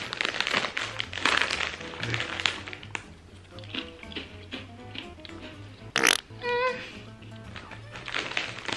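Crinkling of a plastic snack bag being opened and handled for the first few seconds, over background music. Near six seconds, a sudden loud burst is followed by a brief pitched tone.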